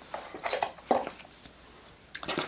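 Light handling sounds of hands working a metal clasp fitted through a fabric-covered cardboard strip: soft rustles with two sharper clicks, about half a second and about a second in.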